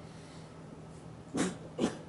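A pause in speech with quiet room tone, then two short, sharp breaths or sniffs into a pulpit microphone about a second and a half in, half a second apart.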